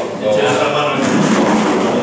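Indistinct chatter of several men talking at once in a room.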